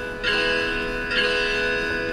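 Strummed acoustic-guitar chords from an iPad guitar app, played through the iPad's speaker. Each chord rings on, with a fresh strum about a quarter second in and another just after a second in.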